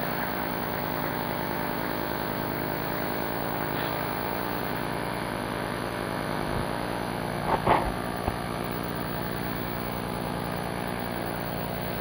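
Steady hum of a large hall's room tone through an open public-address microphone, between speeches. A single short noise stands out about two-thirds of the way through, with faint low thumps around it.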